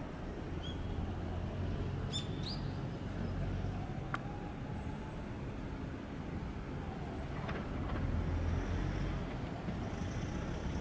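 Steady low rumble of road vehicles, with a few short rising bird chirps about two seconds in and a single sharp click near the middle.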